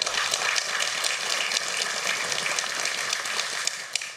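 Audience applauding: a steady, even crackle of many hands clapping.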